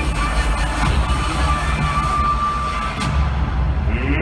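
Loud pregame hype music over an arena sound system, with heavy steady bass and a crowd cheering underneath; the high end drops away about three seconds in.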